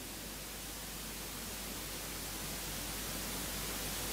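Steady hiss of background room and recording noise, with no distinct event; it grows slightly louder over the few seconds.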